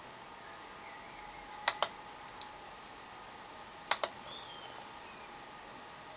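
Two clicks of a laptop's pointer button, about two seconds apart, each a quick click-clack of press and release, over a faint steady hum.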